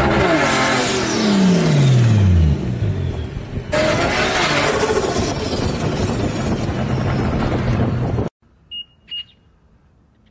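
BMW M2's turbocharged straight-six running hard, its pitch falling steadily over the first two seconds or so as the revs drop. A second, similar stretch of engine sound starts suddenly near four seconds, with the revs rising and falling slightly, and cuts off abruptly a little past eight seconds. Two short high beeps follow.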